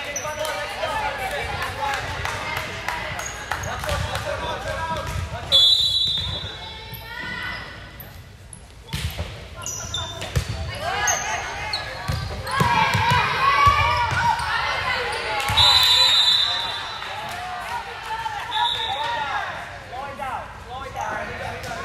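Indoor volleyball play: the ball being struck and bouncing on the hardwood court, a few short high sneaker squeaks, and indistinct calls and chatter from players and spectators, echoing in the gym.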